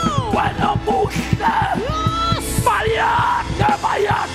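Loud fervent prayer: voices cry out in long, drawn-out calls over music with a fast, steady beat.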